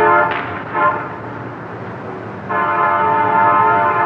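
A loud horn sounding a steady, many-toned chord over a low rumble. It breaks off just after the start and sounds again about two and a half seconds in.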